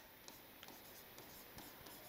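Faint scratches and taps of chalk writing on a chalkboard, a few light ticks over near silence.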